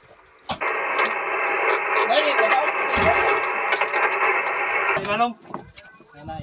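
A two-way radio transmission: a voice coming through the radio's speaker over a steady hiss of static, thin and narrow-sounding. It starts about half a second in and cuts off abruptly about a second before the end.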